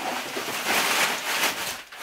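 Plastic garbage bag rustling and crinkling, a continuous noise that dies away near the end.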